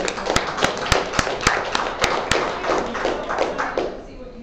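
Small audience clapping, with one clapper close by giving strong, evenly spaced claps about three to four a second over a denser spatter of claps; the applause dies away near the end.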